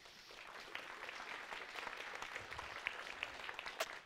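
Audience applauding in a large hall, a steady patter of many hands that starts right away and dies down near the end.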